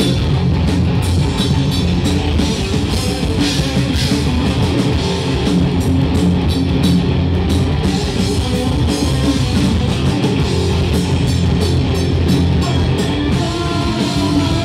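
Live rock band playing loudly and without a break: electric guitars and bass over a drum kit, with no singing.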